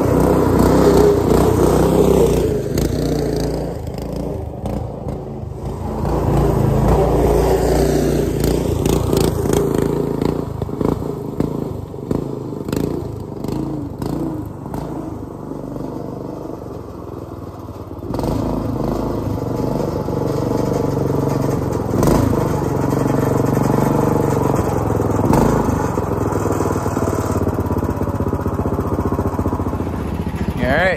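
Predator 420 single-cylinder four-stroke engine of a lifted golf cart running through a new rear exhaust, revving up and down as it drives. It grows louder and fainter as it moves near and away, with a sudden rise in level about two-thirds of the way through.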